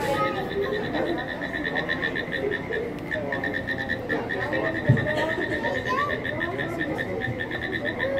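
Recorded frog calls playing at a frog exhibit: a fast, steady train of short, high-pitched pulses, about ten a second. A single low thump sounds about five seconds in.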